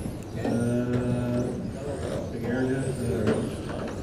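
Electric 1/10-scale RC touring cars' brushless motors whining at a high pitch that rises and falls as the cars pass.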